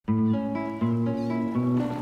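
Instrumental opening of a children's cartoon theme tune: sustained chords changing in step about every three-quarters of a second.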